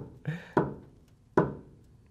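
Two sharp knocks about a second apart, each dying away quickly: hand-tool strikes on wooden blocks wedged against a VW Beetle's steel front axle beam, easing the cable tubes aside.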